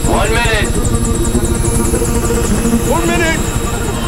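Helicopter rotor and engine noise heard from inside the cabin, a dense, fast-throbbing rumble, with a short shout near the start and another about three seconds in, over a film music score.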